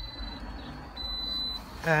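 A thin, high electronic tone sounding in pulses of under a second with short gaps, over a low rumble.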